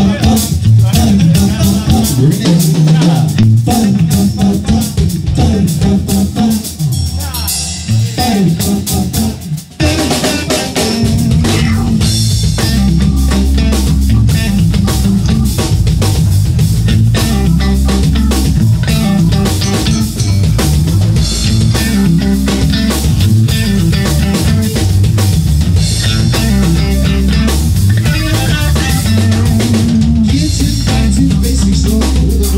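Live rock band playing: electric guitar, bass guitar and drum kit picked up by a single room microphone, with the bass heavy in the mix. For the first ten seconds or so the playing is sparser with short breaks, then after a brief drop about ten seconds in the full band plays on steadily.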